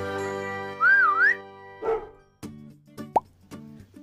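Short logo jingle: a held music chord with a wavering, whistle-like glide about a second in, then a few light pops and a quick rising 'plop' near the three-second mark.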